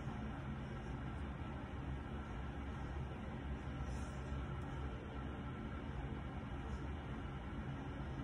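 Steady low hum with an even hiss: background room noise, with no distinct events.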